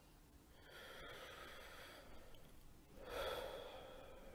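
Faint, slow deep breathing by a man: one long breath lasting about a second and a half, then a shorter, louder breath about three seconds in.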